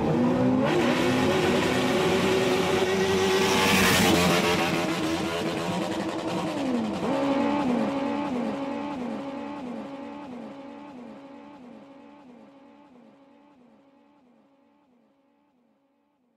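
Racing engine sound effect: engines revving and rushing past with a whoosh about four seconds in. It then turns into a rev pattern repeating about twice a second that fades out over the following several seconds.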